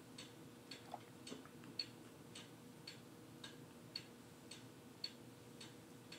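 Faint, steady ticking of a clock, about two ticks a second.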